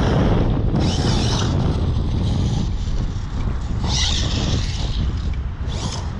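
Arrma Typhon 6S BLX RC buggy running on 6S power, its brushless motor and tyres heard as it drives off across grass, over heavy wind rumble on the microphone.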